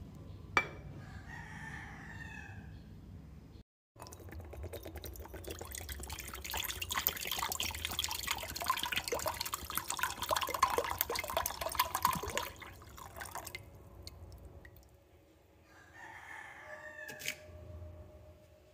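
Fresh coconut water poured from a green coconut into a ceramic bowl: a splashing, dripping pour lasting about ten seconds. A rooster crows once before the pour and again near the end.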